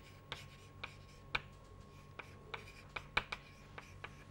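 Chalk writing on a chalkboard: a string of short, sharp, irregular taps and scrapes as the chalk strikes the board, with a faint steady hum underneath.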